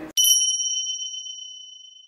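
A single high bell ding, an editing sound effect, struck once just after the start and ringing out with a slow fade over about two seconds.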